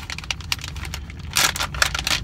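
A snack bag of dried orange slices crinkling and crackling as it is handled and opened, with louder rustles about one and a half seconds in and again near the end.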